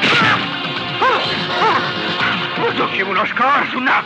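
Film background score with a sudden crash right at the start. Over it a man cries out several times in short, wordless, rising-and-falling yelps.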